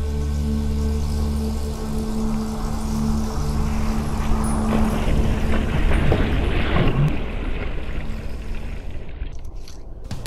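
Water splashing and rushing at the surface, swelling to a peak in the middle and fading away near the end, over a low sustained music drone that dies out in the first few seconds.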